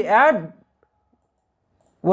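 One faint computer-mouse click a little under a second in, after a spoken word; otherwise near silence.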